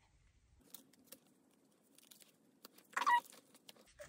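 Quiet handling of photocards and plastic binder sleeves: a few faint light clicks and rustles, with one brief louder sound about three seconds in.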